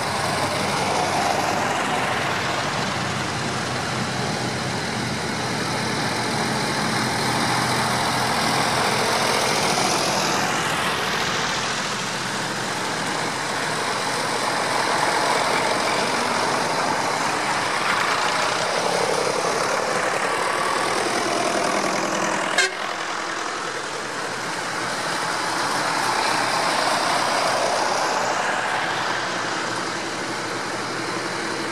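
Vintage farm tractor engines running as a line of tractors drives past one after another, the sound swelling and easing as each goes by. A single brief sharp click about three-quarters of the way through.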